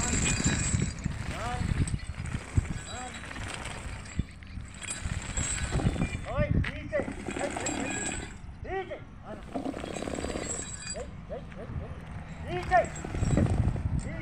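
A person's voice calling out in short, repeated calls, several times across the stretch, over outdoor background noise.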